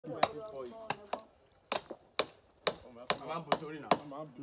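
Sharp knocking strikes, about two a second, like chopping, with a man's voice between them.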